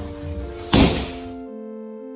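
Music with sustained keyboard notes, and about three quarters of a second in a single heavy thud of a strike landing on a hanging heavy punching bag. The room sound drops away suddenly about a second and a half in, leaving only the music.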